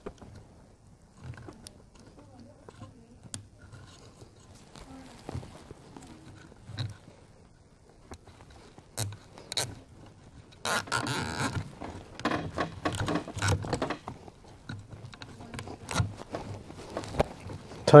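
Hands handling a nylon cable tie and the scooter's metal controller housing: scattered small clicks and taps, with a short zipping rasp about eleven seconds in as the tie is drawn through its ratchet head.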